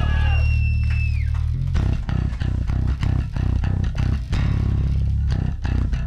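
Live rock band playing an instrumental passage: a held bass guitar note with a high guitar tone that bends down and drops away, then about a second and a half in the drums come in with a fast, steady beat under bass and guitar.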